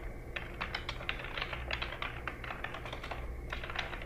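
Typing on a computer keyboard: quick, irregular keystrokes, several a second, over a faint steady low hum.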